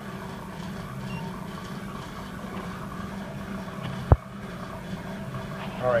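A steady low machine hum, with a single sharp click about four seconds in.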